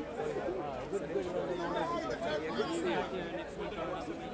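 Several men talking at once in a small outdoor crowd, their overlapping voices blurring so that no single speaker stands out.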